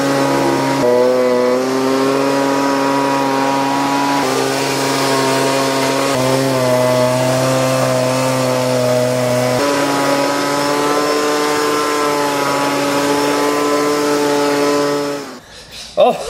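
Leaf blower running steadily with a rush of air, blowing dead caterpillars off paving stones; its engine note steps up and down slightly a few times. It cuts off about a second before the end.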